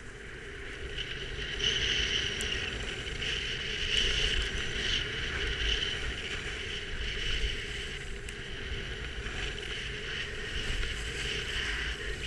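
The camera-wearer's own edges hissing and scraping over packed snow while riding steadily down a groomed run, with wind on the microphone. It grows louder about a second and a half in as speed picks up.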